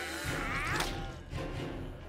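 Cartoon soundtrack: background music with a thud-like hit sound effect during a throwing scene.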